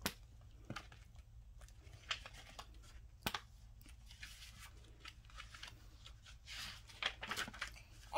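Paper pages of a hardcover picture book being handled and turned: quiet rustles, with a few sharp light clicks and a longer rustle near the end.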